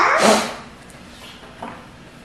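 A dog barks once, loudly, at the start, with a faint short sound near the end.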